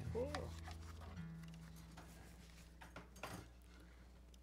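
Low acoustic guitar notes ringing and slowly fading, the tone shifting about a second in, with a few faint taps near the end.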